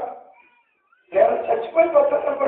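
A man preaching in Telugu: a phrase trails off, then after a pause of about half a second he speaks again.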